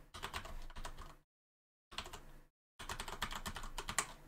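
Computer keyboard being typed on in three quick runs of keystrokes with short pauses between them, as a command line is entered.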